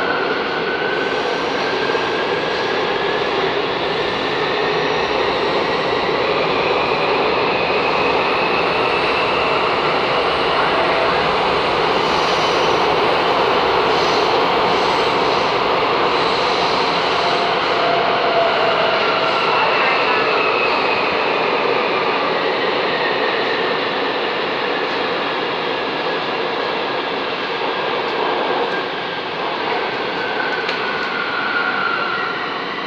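Bucharest Metro M5 train running through a tunnel, heard from inside the car: a loud, steady rush of wheels and running gear. Over it the electric traction motors whine, rising in pitch as the train speeds up and falling again in the second half as it slows.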